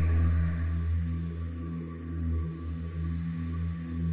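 Outro music: low, steady sustained bass tones with a slow pulse.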